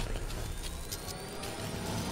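Sound-designed intro effect: a dense noisy rush over a low rumble, with a thin tone gliding slowly upward as it builds.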